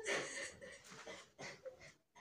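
Faint, breathy stifled laughter: a few wheezy puffs of breath. The strongest comes in the first half-second, then smaller ones follow.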